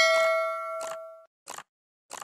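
Notification-bell sound effect from a subscribe-button animation: a bright bell ding rings and dies away over about a second, followed by two short whooshes.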